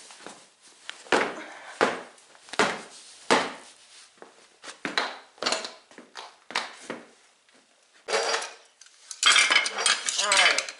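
Metal clinks and knocks, a string of separate hits, ending near the end in a dense clatter of screwdrivers against a steel lawn tractor wheel rim.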